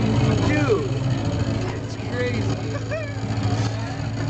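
Bare subwoofer playing a steady low bass tone while cornstarch-and-water slurry jumps on its cone under poking fingers.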